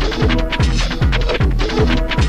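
Techno from a 1996 DJ mix tape: a steady, fast kick drum under hi-hats and short repeating synth stabs.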